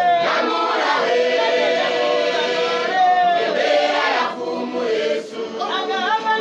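A church congregation singing together in chorus, many voices at once, with long held notes.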